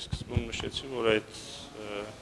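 A man speaking slowly, with drawn-out, held syllables.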